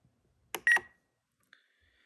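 Spektrum NX radio transmitter being worked by its roller button: a click and a short electronic beep a little over half a second in, then a fainter, longer beep near the end, as the selected menu opens.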